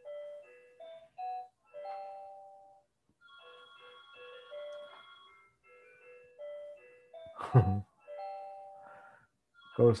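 A simple electronic tune of single held notes, one after another, playing quietly under the room sound. A short burst of a man's voice comes about seven and a half seconds in.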